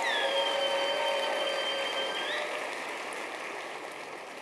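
A church congregation applauding, with a few long high-pitched held cheers above the clapping for the first two seconds or so. The applause then slowly dies away.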